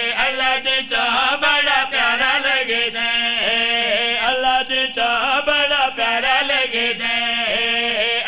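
Men's voices chanting a devotional qasida refrain in unison, with long held notes that slide and waver between pitches.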